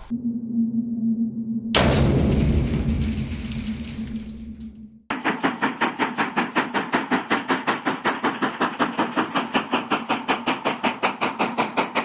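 Steam locomotive sounds: a steady low tone, then a sudden loud rush of steam about two seconds in that dies away, then quick even exhaust beats, about seven a second.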